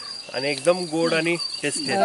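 A person talking in short phrases over the steady, high-pitched trill of an insect.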